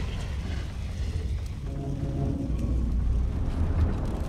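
Film sound mix of a fire burning: a steady low rumble, with held notes of score music coming in about one and a half seconds in.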